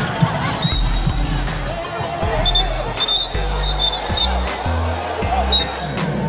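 A basketball bouncing on a hardwood court, heard as scattered sharp knocks, with voices and a few short high squeaks. Background music with a steady bass line runs underneath.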